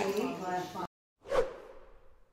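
Café voices cut off abruptly under a second in. After a brief silence, a short whoosh sound effect swells and fades, opening an animated end-screen graphic.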